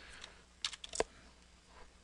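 A few faint computer keyboard key presses, clustered around the middle, the last and loudest about a second in.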